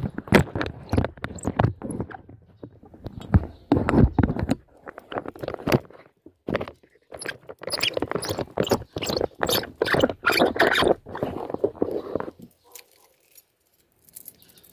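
Handling noise: rapid, irregular scraping and knocking right at the phone's microphone as the phone is settled into a motorcycle handlebar phone holder. It stops about twelve seconds in.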